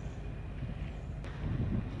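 Low wind noise buffeting the microphone, steady and swelling a little near the end.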